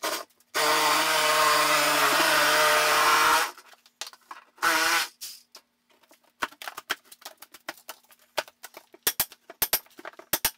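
Cordless drill running in a steady burst of about three seconds, then a short second burst. After that, a rapid run of sharp cracks and snaps as brittle Celotex fibreboard is pried and broken off the wall.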